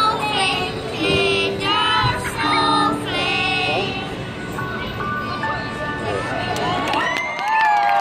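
A children's choir singing over music, the song trailing off about halfway through. Near the end the crowd starts cheering, with whoops falling in pitch and the first claps.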